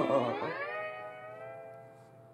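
A single slide-guitar-like musical note, bent upward in pitch over the first second, then held and fading away.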